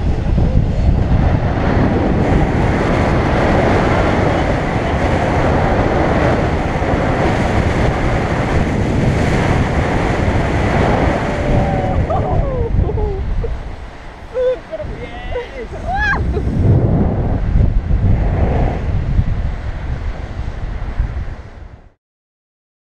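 Airflow buffeting the camera's microphone during a tandem paraglider's spiral dive: a loud, steady wind rush. It eases off about thirteen seconds in, returns a few seconds later, and cuts off at the end.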